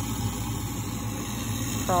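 A steady low machine hum runs under a pause in talk, with a voice starting right at the end.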